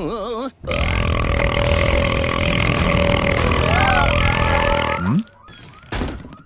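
A cartoon burp, one long, loud belch of about four and a half seconds, starting about half a second in after a brief warbling tone. It ends with a short rising squeak and a few chirps near the end.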